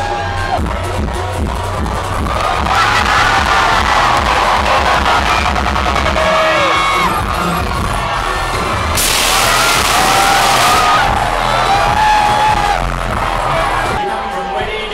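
Electronic dance music played loud over a club sound system, with a pounding bass beat, a wavering vocal line and crowd noise. A loud hissing burst about two seconds long cuts in near the middle.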